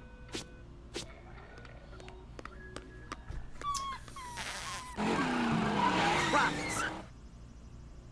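Cartoon sound effect of a van pulling up: engine and skidding tyres, loud for about two seconds past the middle, after a few faint clicks and short tones.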